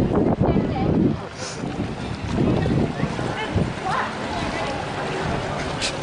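Water splashing and running in a shallow fountain pool as people wade through it, with wind rumbling on the microphone in uneven gusts.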